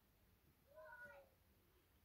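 Near silence, broken about two-thirds of a second in by one faint, short, meow-like call that rises slightly and then falls in pitch.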